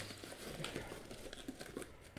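Clear plastic packaging and a paper leaflet crinkling and rustling as they are handled inside a cardboard box, with a few small ticks.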